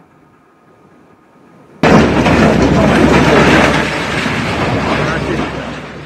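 Demolition noise from an excavator breaking down a masonry building, heard through a phone's microphone: after a quiet start a loud, dense crash and rumble cuts in suddenly and eases off over the next few seconds.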